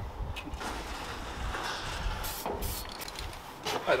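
Aerosol spray-paint can giving two short hissing sprays about halfway through, over a steady low outdoor rumble.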